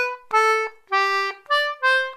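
Frank Edgley GD anglo concertina playing a short phrase of single reed notes with brief breaks between them: three notes stepping down in pitch, then a higher note and back down.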